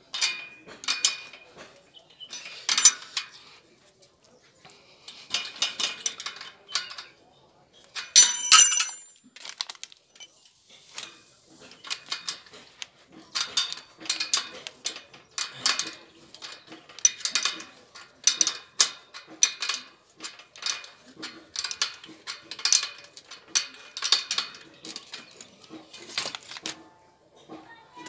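Metal clinking and tapping from tools on a bicycle's rear hub and axle parts during a freewheel and hub job: short bursts of clinks, about one a second, with a brighter ringing clink about eight seconds in.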